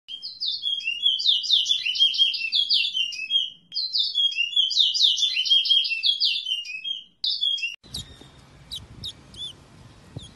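Songbird singing a fast, varied warbling song of quick repeated notes in two long runs separated by a brief pause. Near the end it gives way to faint background noise with a few soft chirps.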